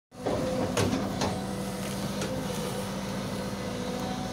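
Caterpillar 313D2 hydraulic excavator's diesel engine running steadily under working load, with a few sharp knocks in the first half as the bucket digs through soil and banana-plant debris.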